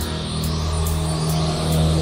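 Psytrance music: a steady, pulsing bass line under hi-hats ticking about twice a second, with a synth sweeping up and down in pitch.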